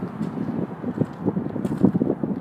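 Wind buffeting the microphone of a handheld phone: an irregular low rumble with small gusty flutters.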